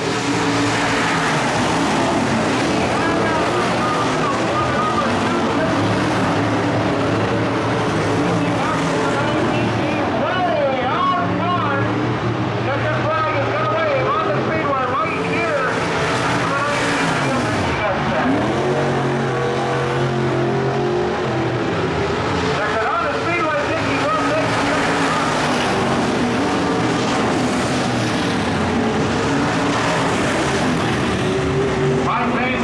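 IMCA Modified dirt-track race cars' V8 engines running hard around the oval, their pitch rising and falling as cars pass, with voices over them.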